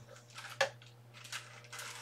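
Faint rustles and light clicks of a parchment-paper sheet being handled as it feeds out of a running laminator, over a steady low hum.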